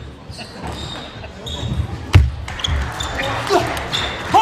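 Table tennis rally: the plastic ball clicking off the bats and table, with one sharp hit about two seconds in the loudest. Short squeaks of the players' shoes on the court floor come near the end.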